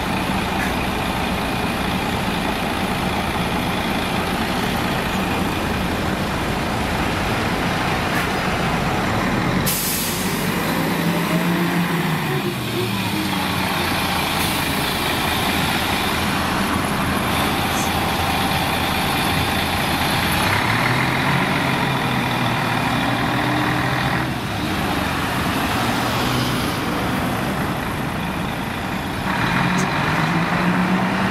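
A city bus's diesel engine running, with a sharp hiss of air brakes releasing about ten seconds in. The bus then pulls away, its engine note rising and dropping several times as it accelerates through its gears.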